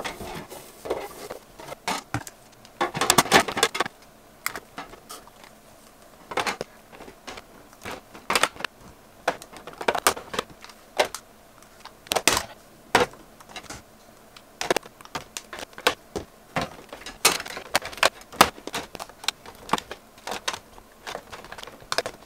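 Blush compacts clicking and clacking against each other and against a clear acrylic drawer as they are set back in one at a time, in a run of sharp, irregular knocks. At first a cloth rubs over the acrylic as the drawer is wiped clean.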